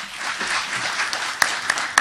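Audience applauding in a hall, a dense steady patter of clapping with a few sharper individual claps standing out.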